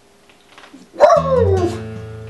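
After a quiet first second, an acoustic guitar chord is struck and rings on. A loud cry that slides down in pitch comes in with it.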